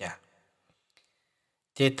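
A voice speaking, breaking off for about a second and a half of near silence broken only by a couple of faint clicks, then going on near the end.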